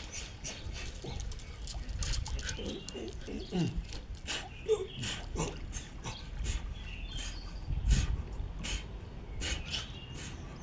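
Dogs vocalizing as they play, with several short calls that fall in pitch, and sharp clicks throughout. One loud thump comes near the end.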